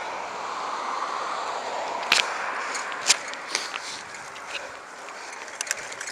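Steady rushing road and traffic noise heard from a bicycle, easing off in the second half, with two short sharp sounds about two and three seconds in.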